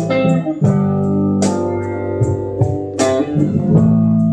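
Live band playing an instrumental passage on guitar, bass guitar and drums: sustained guitar and bass notes, with a sharp drum hit about every second and a half.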